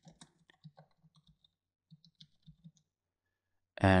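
Computer keyboard typing: a run of quick, light keystrokes that stops about three seconds in.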